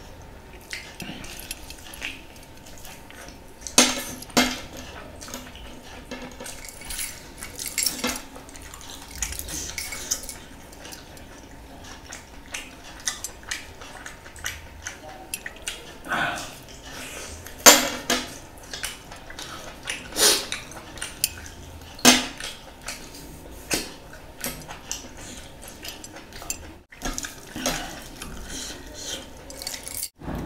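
Close-up eating sounds of a person eating biryani and meat by hand: chewing and mouth smacks, with sharp clicks every few seconds.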